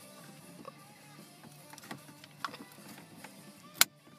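Small plastic clicks and fumbling as a power window switch's wiring connector is pushed into place, ending in one sharp click near the end as it seats. Faint music plays underneath.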